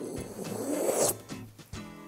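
A framed chalkboard scraping and rubbing for about a second as it is picked up, over light background music.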